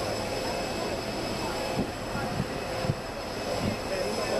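Steady jet engine whine and rumble from aircraft on an airfield apron, with people's voices murmuring and a few short knocks in the second half.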